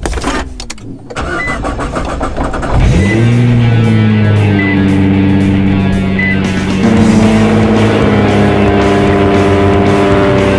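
Nissan GT-R R35's twin-turbo V6 started by push button. The engine catches about three seconds in with a rising flare and settles into a steady run, with rock music playing over it.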